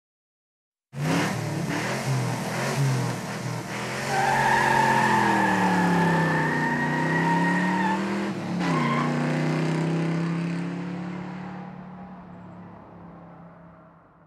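Car engine revving hard, its pitch sinking and climbing again, with a steady high tyre squeal over it from about four to eight seconds in. It fades away over the last few seconds.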